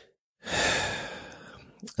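A man breathing out in a long sigh, starting about half a second in, loudest at first and fading away over about a second.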